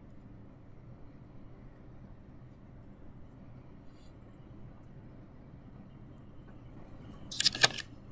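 Faint handling sounds of fingertips pressing and lightly tapping soft polymer clay on a plastic transparency sheet. Near the end there is a brief louder crackle of the plastic sheet being picked up.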